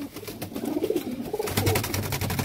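Domestic pigeons cooing: low, wavering coos from the birds crowded close to the microphone.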